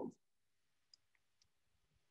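Near silence with a few faint, short clicks about a second in, from the computer's input being worked while text is selected in the editor.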